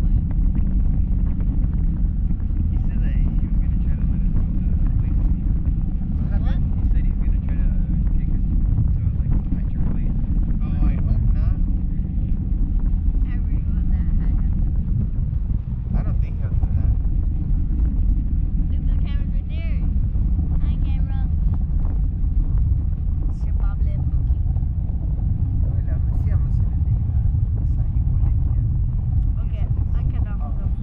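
Wind rumbling steadily on the microphone of a camera carried aloft under a parasail, with faint voices now and then.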